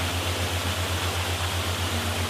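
Steady rushing of a waterfall, with a low, evenly pulsing hum beneath it.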